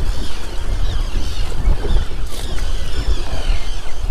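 Loud, uneven low rumble of wind buffeting the microphone on an open boat on choppy water.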